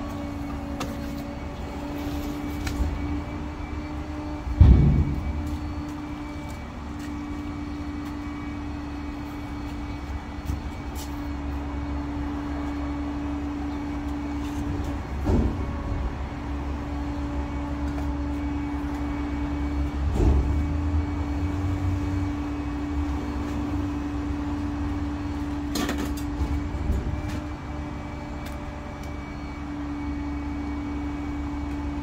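A motor vehicle's engine idling, a steady hum over a low rumble, with a loud thump about five seconds in and a few duller knocks later.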